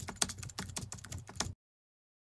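Computer-keyboard typing sound effect: a rapid run of key clicks that cuts off suddenly about one and a half seconds in, as the title is typed out letter by letter.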